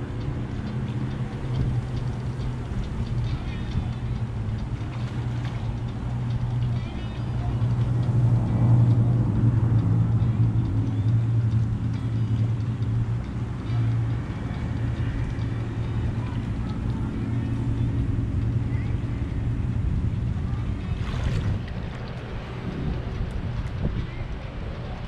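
A motor or engine running steadily, a low even hum that swells louder for a few seconds in the middle.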